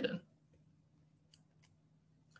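The end of a spoken word, then near silence (room tone with a faint hum) broken by two faint short clicks about a second and a half in.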